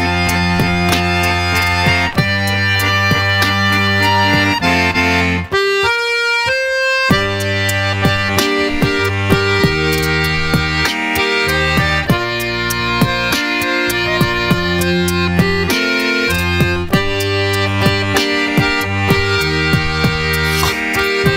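A bayan (chromatic button accordion) playing a rock tune: held chords over a steady bass, with sharp clicks on the beat. About five and a half seconds in, the bass drops out for a moment and only a few high notes sound.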